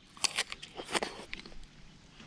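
Thin plastic food bags crinkling in short, faint crackles as they are handled and opened.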